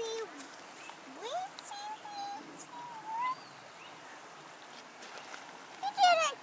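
Steady rush of shallow creek water, with a child's high voice making a few soft, brief sounds in the first half.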